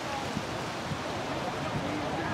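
Steady wind noise on the microphone with faint, distant voices.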